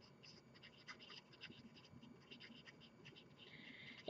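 Faint strokes of a marker pen on paper as a word is handwritten: many short strokes, with a slightly longer one near the end.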